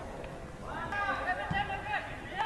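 Distant raised voices on a football pitch: a drawn-out call or shout starts about half a second in, fainter than the commentary.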